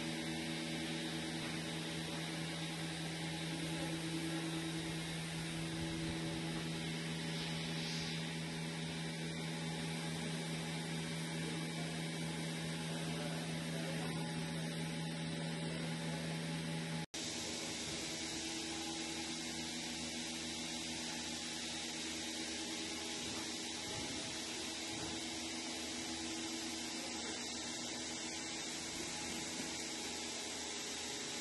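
Steady mechanical hum and hiss of milking-parlor machinery running, with a few steady low tones. The sound drops out for an instant just past halfway, and when it returns the lowest tone is weaker.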